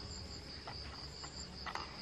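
Steady, high-pitched chorus of night insects chirring.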